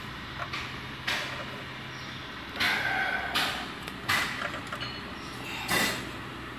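Small sealed lead-acid battery cases being handled and set down on a hard floor: several short scrapes and knocks at irregular intervals, over a faint steady low hum.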